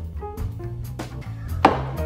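Background music with a walking bass line stepping in pitch under a regular drum beat, and one louder hit about one and a half seconds in.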